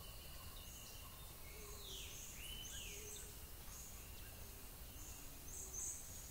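Faint rainforest ambience with bird calls: a few downward-sliding whistles about two seconds in, short high notes repeated throughout, over a steady thin insect tone.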